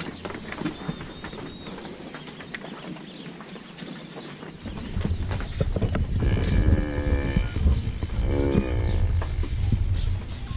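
Dairy cows in a crowded yard, one mooing twice: a long moo past the middle, then a shorter one. A low rumbling noise sets in about halfway through and carries on under the calls.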